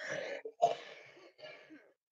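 A woman clearing her throat with three short coughs, muffled behind her hand, each fainter than the last.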